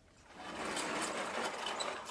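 Steady scraping, rattling noise from handling a lecture-hall blackboard, starting a moment in.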